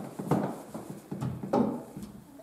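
A few light, irregular wooden knocks and clatters as a wooden-framed bow saw is handled and set down on a wooden workbench.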